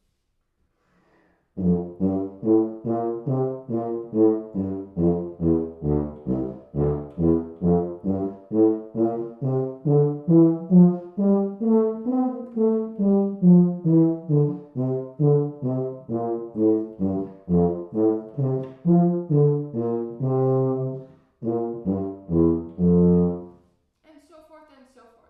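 Solo tuba playing a simple etude as a warm-up: a steady line of separate low notes, two or three a second, with a smoother slurred stretch in the middle and a short breath break near the end.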